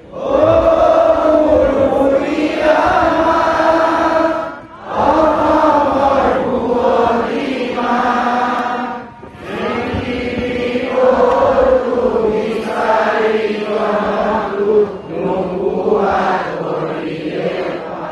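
A large crowd singing a slow song together in unison, in long held phrases with brief pauses about five and nine seconds in.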